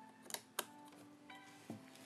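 Quiet background music of soft, evenly spaced held notes, with two sharp clicks a quarter second apart in the first second as a plastic cap is pressed and snapped onto the monitor stand's hub.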